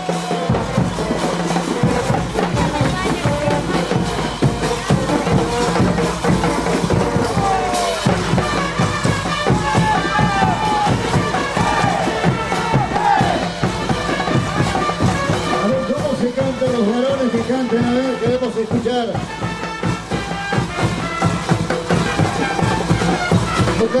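Live brass band playing caporales music, with a steady drumbeat and a brass melody.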